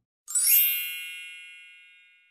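A bright, bell-like chime sound effect for an animated logo card, struck once about a third of a second in. It rings high and fades away over about a second and a half.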